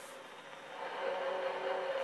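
CB radio receiver audio on channel 11A: low hiss, then from about half a second in a steady humming tone fades in and grows louder. It is a baby monitor transmitting on that channel, heard through the radio's speaker.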